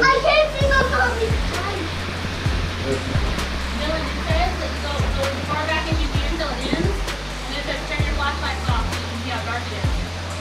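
Indistinct voices talking, with no clear words, in a cave. Underneath runs a steady noisy background with a low rumble, and a few light knocks.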